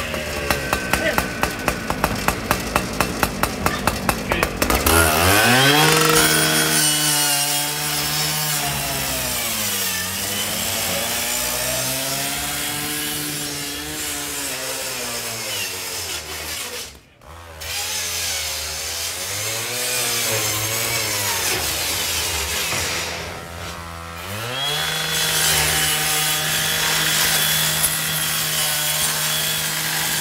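Two-stroke power saw being run to cut into a garage door: it pulses rapidly at low speed, then is throttled up about five seconds in. From there its pitch rises and sags repeatedly as the blade loads up in the cut, with a brief dropout partway through.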